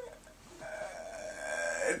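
A person's drawn-out, hesitant "uhhh" held on one steady pitch for over a second, running into the start of a word at the end.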